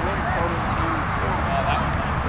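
Several distant voices shouting and calling out across a sports field, over a steady low rumble.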